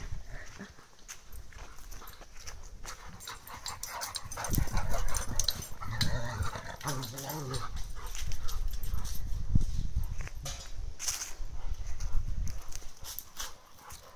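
A Rottweiler and a Cane Corso play-fighting: dog growls and vocal noises with scuffling, coming in uneven surges and busiest through the middle, over a low rumble on the microphone.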